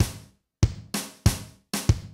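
Zoom MRT-3 drum machine playing a basic kick and snare pattern triggered over MIDI by a Groovesizer step sequencer: separate drum hits with short decays, about one every two-thirds of a second, with a quick double hit near the end.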